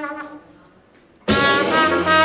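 Traditional jazz band with trumpet, trombone and tuba: a held brass phrase fades out into a brief lull, then about a second and a quarter in the whole band comes back in together, loud and sudden.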